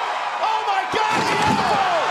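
A wrestler's body crashing down onto a wooden announce table and breaking it, a heavy slam about a second in, over a loud arena crowd screaming and cheering.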